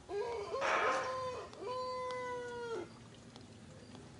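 Rooster crowing once. It opens with a rising, wavering phrase that roughens about a second in, then ends on a long held note that cuts off just before three seconds.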